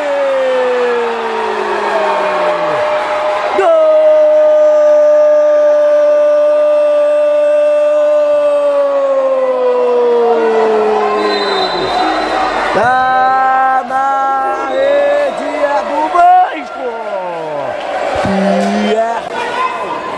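A football commentator's drawn-out goal cry: a man's voice holding one long vowel for several seconds at a time, its pitch sliding slowly down, the longest held for about eight seconds, then shorter shouted calls near the end.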